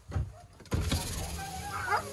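A car's electric power window motor running steadily from just under a second in, after a brief low knock near the start.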